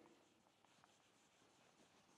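Near silence, with a faint rubbing of a whiteboard eraser wiping marker off the board.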